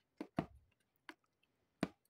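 Fingernails picking at the sealed flap of a cardboard cookie box: four short, sharp clicks and taps spread across two seconds, with a near-silent room between them.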